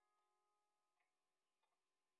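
Near silence: the sound track is almost completely muted, with only a few barely audible faint ticks.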